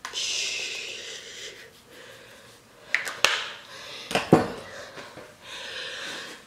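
A breathy rustle, then a few sharp clicks and knocks about three and four seconds in, the loudest with a dull thud: handling noise close to the microphone.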